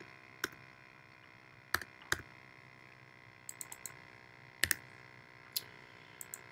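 A few separate computer keyboard keystrokes and mouse clicks, spaced out over several seconds, as values are typed into a number field. Underneath is a faint steady hum.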